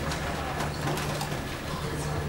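A low hum that comes and goes, with quiet murmuring of people in the audience and a few faint clicks; no piano is playing.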